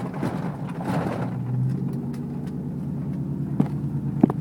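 Pickup truck being driven, heard from inside the cab: a steady engine hum and tyre noise, with a swell of road noise about a second in. A sharp single knock comes near the end.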